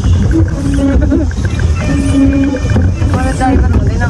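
A person's voice in short, steadily held notes over a continuous low rumble.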